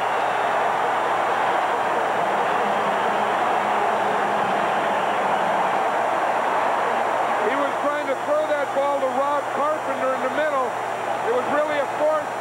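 Stadium crowd cheering an interception, a steady roar that dies down about seven seconds in as a man's voice comes in.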